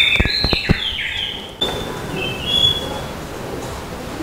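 A few sharp metallic clinks in the first second from tools and bolts at a flywheel being bolted onto an engine block, with short high bird chirps in the background.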